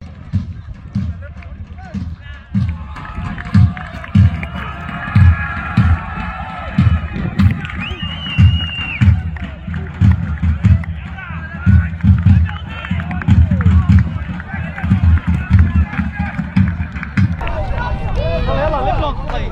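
Wind buffeting the phone's microphone in irregular low thumps, over distant voices and shouts from players and spectators.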